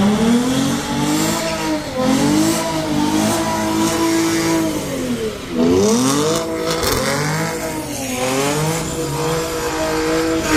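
Dodge Challenger's engine revving hard, its pitch climbing and falling several times, with a sharp drop and climb about five and a half seconds in. By the end the rear tyres are spinning in a smoky burnout.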